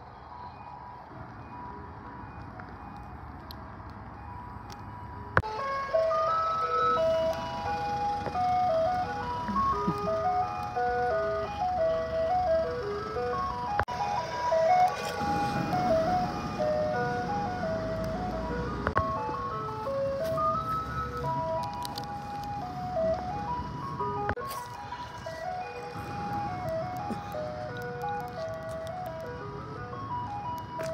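Ice cream van's jingle playing a repeating melody of short high notes over its loudspeaker, becoming much louder suddenly about five seconds in. A low vehicle rumble sits underneath through the middle.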